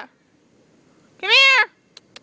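German shepherd giving one short whining call about a second in, its pitch rising then easing down.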